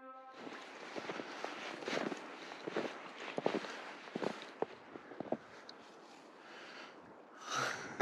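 Footsteps crunching in deep snow, an irregular run of short crunches over a soft hiss that thins out after about five seconds.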